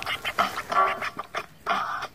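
Vinyl scratching on a portable turntable: a sample dragged back and forth under the hand and chopped by the fader into short, choppy cuts.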